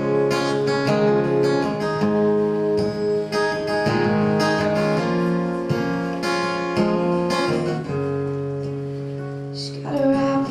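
Acoustic guitar played solo, chords strummed and picked in a steady rhythm, the song's instrumental intro before the vocal comes in.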